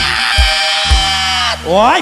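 Molam band playing live: a long held note over kick-drum beats about twice a second, breaking off about a second and a half in. A performer's voice then cries out "oi" with rising pitch.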